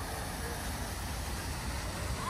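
Steady outdoor city ambience: a low rumble of road traffic under an even hiss, with no single sound standing out.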